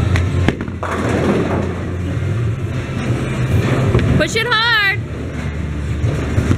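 Bowling alley din: a steady low rumble of balls rolling down the lanes. A high, wavering voice cries out briefly a little over four seconds in.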